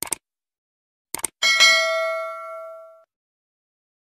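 Subscribe-button sound effect: two quick clicks, another pair of clicks about a second later, then a single bell ding that rings on and fades over about a second and a half.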